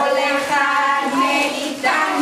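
A woman and a group of young children singing a Hebrew Purim song together, in held, sung notes.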